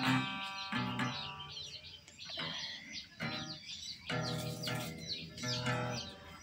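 Acoustic guitar strummed slowly by a beginner: a few separate chords at uneven gaps, each left to ring out. Small birds chirp throughout.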